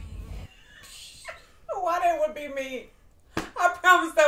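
A person whimpering in fright: a drawn-out voiced moan sliding down in pitch, then a sharp click and another held, whining vocal sound near the end.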